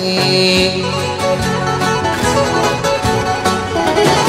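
Live band playing an instrumental passage of a Greek popular song between two sung lines, with no voice over it.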